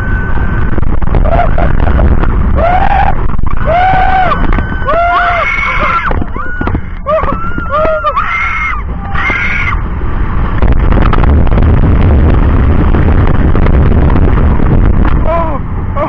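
Roller coaster riders screaming: several voices in rising and falling cries through the first half. About ten seconds in, the screams give way to a loud rush of wind buffeting the microphone as the train speeds along.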